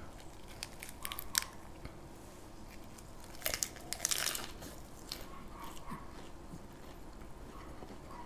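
Crisp lettuce leaf wrapped around grilled pork belly crinkling as it is handled, then a crunchy bite into the wrap about three and a half seconds in, the loudest sound, followed by faint chewing.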